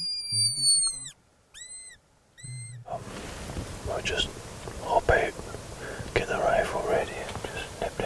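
Mouth-blown fox call: one long, high squeal that slides down in pitch and cuts off, then two short squeaks that rise and fall, made to draw a fox in. Whispered voices follow.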